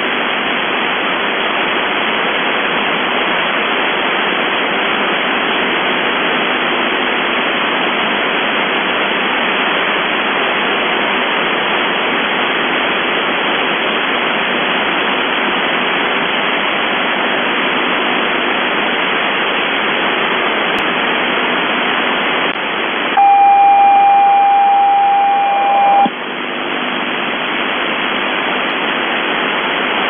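Shortwave receiver static on 4625 kHz, the UVB-76 'Buzzer' frequency: a steady hiss. About 23 seconds in, a steady single tone sounds for about three seconds and cuts off sharply.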